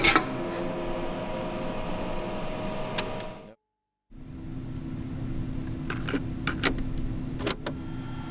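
Small electric servo motors of a robotic arm and gripper whirring steadily, with a click about three seconds in. The sound cuts out completely for about half a second near the middle, then a steady hum returns with several sharp clicks near the end.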